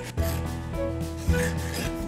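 Felt-tip marker rubbing across paper in short strokes as a letter is written, over background music with a steady beat.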